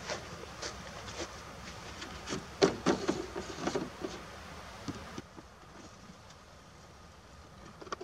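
Light knocks, clunks and rattles of handling a plastic gas can and a lawn tractor's seat, busiest about two and a half to four seconds in, then quieter.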